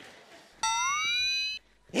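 A high-pitched tone lasting about a second, starting suddenly and gliding upward before cutting off sharply, like a comic sound effect laid over the sketch. A short shout follows near the end.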